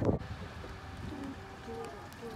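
Birds calling outdoors: short, low pitched calls come every half second or so over light background noise. At the very start there is a brief low rumble of wind or handling on the microphone.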